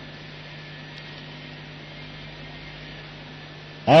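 Steady low electrical hum with faint hiss, typical of mains hum on a recording. A man's speech starts again just before the end.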